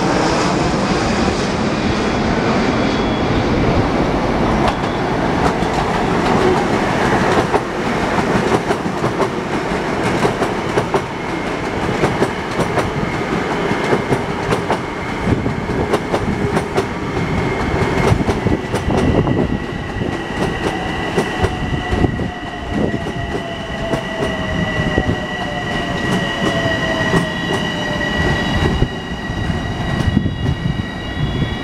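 Long Island Rail Road electric multiple-unit trains passing close by, wheels clattering over the rail joints. Partway through, a steady high-pitched wheel squeal sets in, along with a whine that slowly falls in pitch.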